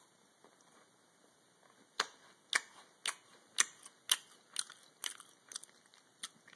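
A person chewing a crunchy coconut-and-caramel Girl Scout cookie (Caramel deLites), with crisp crunches at a steady pace of about two a second, starting about two seconds in.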